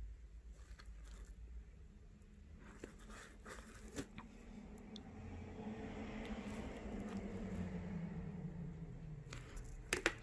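Faint scattered small taps and handling noise as a metal dotting tool presses tiny caviar beads into gel on a false nail tip. A faint low rushing noise swells in the second half.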